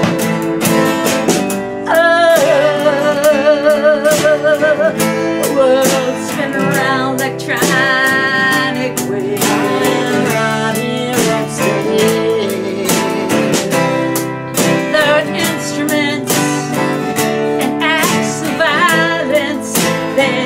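Live acoustic band playing a country-style song: two steel-string acoustic guitars strummed with a drum kit and cymbals, under a held, wavering sung melody.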